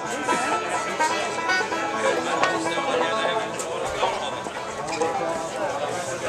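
Live bluegrass band playing, plucked strings heard under the chatter of a crowd talking nearby.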